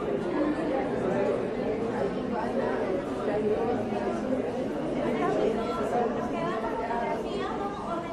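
Indistinct chatter of several overlapping voices, a steady babble of background conversation with no single voice standing out.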